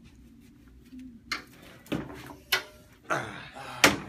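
A chair being pulled out and moved into place: a few separate knocks and a short scrape, the loudest knock just before the end.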